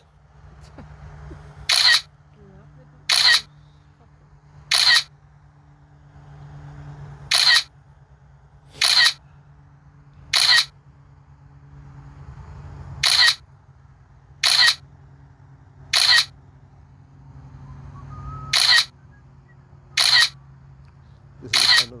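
Phone app's camera-shutter sound effect, a short sharp click repeating about every one and a half seconds, twelve times, in groups of three with a longer gap between groups. Each click marks a frame taken by the DJI Mavic Air 2 during an automatic photo sequence. A steady low hum runs underneath.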